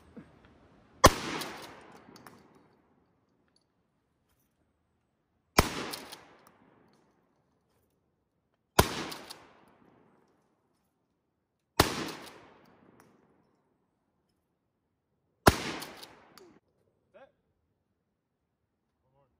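Shotgun fired five times at a steady pace, one shot every three to four seconds, each sharp report followed by a short echo that trails off.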